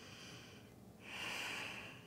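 A woman breathing, faint: a short soft breath at the start, then a longer one from about a second in that lasts almost a second.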